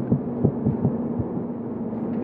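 A pause in speech: room tone through the pulpit microphone, with a steady low hum and a few faint, soft low thumps.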